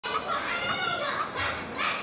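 High-pitched voices calling out almost without pause.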